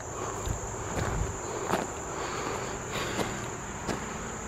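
Steady high-pitched chorus of insects, with a few soft footsteps on a gravel path.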